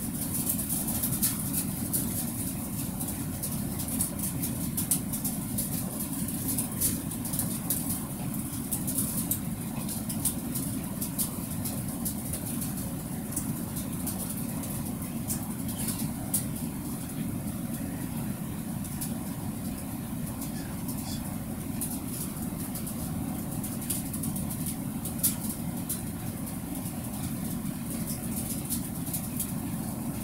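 A steady low rumbling hum runs unbroken throughout, with faint scattered high-pitched clicks and crackle over it.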